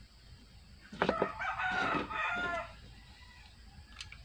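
A rooster crowing once, starting about a second in and lasting under two seconds, with a sharp click just as it begins.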